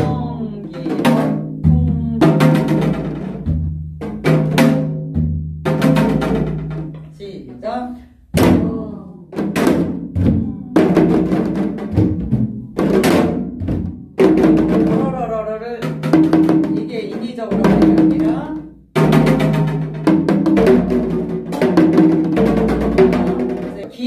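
Janggu (Korean hourglass drum) playing the gutgeori rhythm in 12/8, a steady cycle of deep and sharp strokes with quick rolled strokes, and a woman's voice singing along with long held notes.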